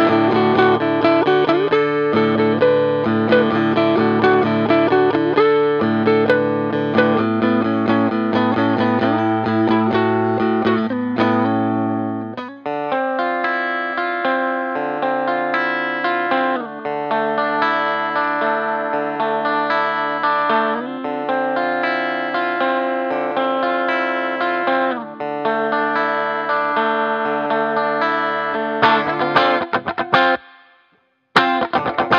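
Electric guitar built from a DIY Jag-Stang-style kit, played through an amp: chords and picked notes, with the low bass notes dropping away about twelve seconds in as the playing moves higher up, stopping right at the end. The tone has a twangy, almost single-coil Telecaster-like quack despite the humbucker.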